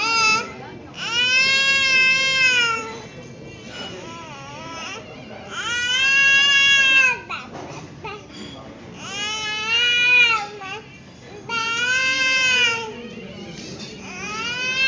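A baby's long, high-pitched wailing calls, four of them, each a second or two long. Each call rises and then falls in pitch, with short pauses between.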